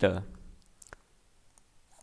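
A few light clicks of a stylus on a pen tablet as words are handwritten. The sharpest click comes a little under a second in.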